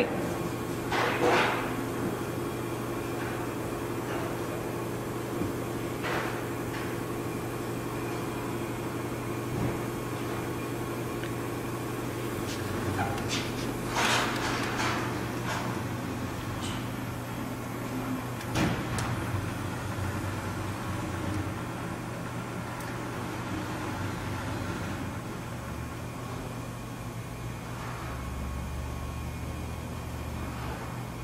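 Matrix Daytona XL stone edge shaper and polisher being jogged through its motions: a steady low hum from the machine, broken by a few knocks and clunks as the carriage and the polishing head on its index ring move.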